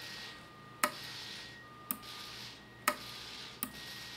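Toggle switch on a FASSTest 14-channel RC transmitter clicking four times as it is flipped between flight modes. Between the clicks there is a faint high whine, typical of the glider's wing servos moving the flaps and ailerons.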